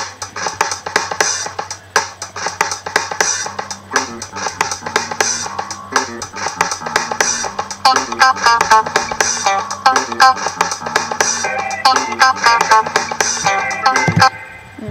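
Loop-built rock-and-blues song playing back from GarageBand: a drum loop with electric bass and electric guitar, and an organ part joining. It has a steady beat, and short repeated chords stand out from about eight seconds in.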